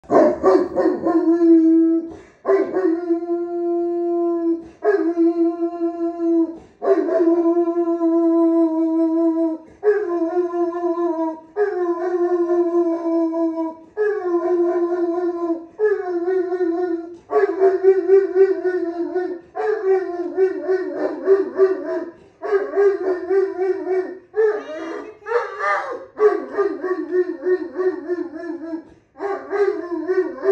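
Great Pyrenees dog howling: a long series of drawn-out, steady-pitched howls, each about two seconds long with short breaths between them. About halfway through the howls turn wavering, and one climbs higher near the end.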